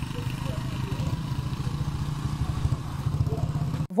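Small motorcycle engines running close by, a rapid low putter, with faint voices behind. The sound cuts off suddenly near the end.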